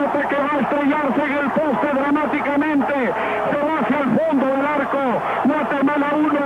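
Male football commentator talking fast and without pause in Spanish, in the narrow, muffled sound of an old television broadcast.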